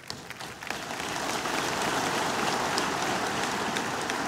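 A large congregation applauding: a dense, steady clatter of many hands clapping that builds over the first second and then holds.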